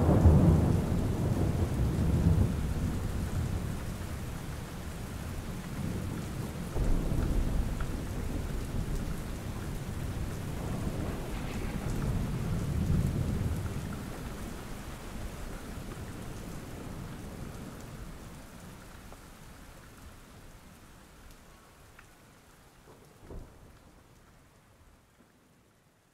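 Steady rain with rolls of thunder: a loud rumble at the start and others about seven and thirteen seconds in, with a short one near the end. The whole sound slowly fades out over the last ten seconds or so.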